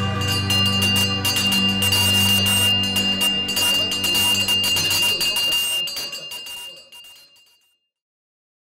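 A small hanging bar bell rung rapidly and over and over, one high ringing note with many quick clapper strikes, over the last notes of a music track. The ringing dies away over the last couple of seconds.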